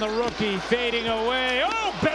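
A man's voice, the TV broadcast's play-by-play commentator, calling the action excitedly over arena crowd noise; his voice holds a long note in the middle and rises in pitch near the end.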